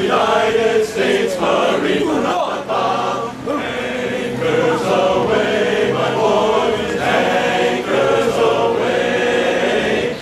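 Men's chorus singing in harmony, with no instruments.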